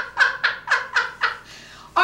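A woman's laugh: about six short bursts, each falling in pitch, at roughly four a second, growing weaker and dying away about a second and a half in.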